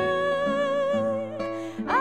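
A soprano holds a long sung note with a light vibrato over acoustic guitar accompaniment. About a second and a half in, the note breaks off with a breath, and a new note slides up into place near the end.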